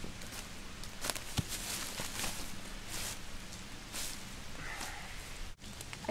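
Dry leaf litter rustling and crackling in a few short, uneven bursts over a steady outdoor hiss.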